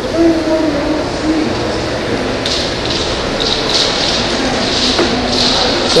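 A person's voice in the first second or so, over a steady background hum of a large indoor space. From about two and a half seconds in comes a run of soft scuffing sounds, about two a second.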